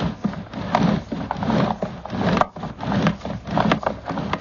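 Sewer inspection camera's push cable being pulled back out of the line by hand: an irregular string of knocks and clicks over rubbing and scraping as the cable is drawn in.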